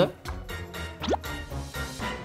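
Quiet background music with a single quick rising 'bloop' about a second in.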